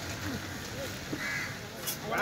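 A crow cawing over faint background chatter.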